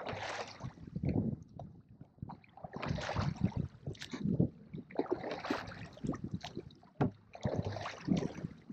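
Oars of an inflatable rowboat dipping and pulling through lake water, splashing in a steady stroke about every two and a half seconds, with small knocks between strokes.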